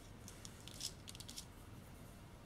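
Faint, quick run of tiny clicks: small metal jump rings and pearl charms clicking against each other as they are slid along a necklace cord.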